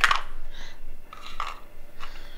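Large plastic toy building blocks clacking together in a short clatter right at the start, followed by only faint small sounds.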